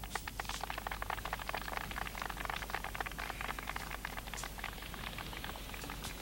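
A dense, rapid, irregular clatter of small hard objects rattling, steady in level with a few sharper clicks.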